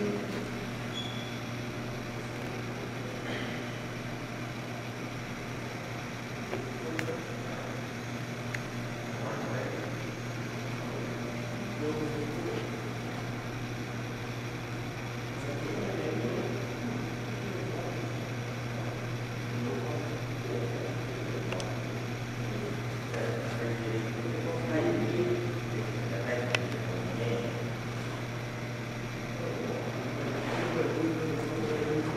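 A steady low hum of indoor room noise, with faint, indistinct voices now and then.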